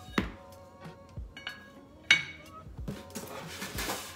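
Small weight plates being handled and set down: two sharp knocks, the louder one about two seconds in with a short ring after it, and lighter knocks in between.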